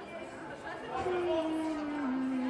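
Murmur of many people in a large hall. From about a second in, a voice sings held notes that step downward, a vocal warm-up scale.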